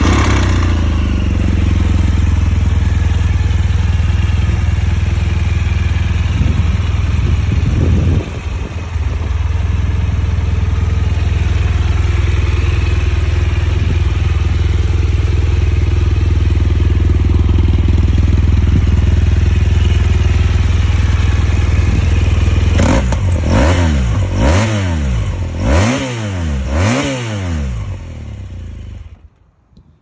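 2017 BMW R1200GS Adventure's liquid-cooled boxer twin, just started, idling steadily, with a short blip of the throttle about seven seconds in. Near the end it is revved quickly about four times, then switched off just before the end.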